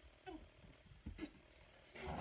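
Near silence with a couple of faint, brief squeaky vocal sounds, one about a third of a second in and another just after a second.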